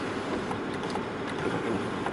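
Steady mechanical hum inside the Land Rover Discovery 3's cabin, with a few faint clicks.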